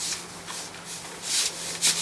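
Cloth light shroud of a truss Dobsonian telescope rustling as it is pulled down over the truss poles, in a few brushing swishes, the loudest about a second and a half in.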